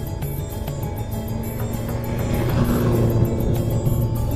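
Background music with a steady beat; in the second half a motor vehicle's engine grows louder under it.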